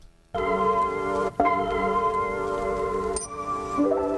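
Playback of a mixed lofi hip-hop beat built from chopped samples, with held chords that change about a second and a half in and again near the end. The beat starts after a brief silence.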